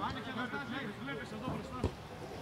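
Players' voices calling across a football pitch, with one sharp thud of a football being kicked near the end.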